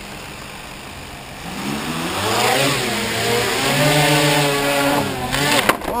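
Quadcopter's electric motors and propellers spooling up about a second and a half in, the pitch rising, then running with a wavering pitch as the ducted platform wobbles. Near the end comes a clatter as it tips over and crashes, an instability the builders traced to a loose gyro wire.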